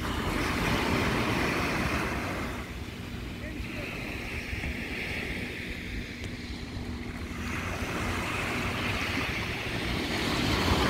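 Small ocean waves breaking and washing onto the shore, the surf hiss swelling and easing, with wind buffeting the microphone.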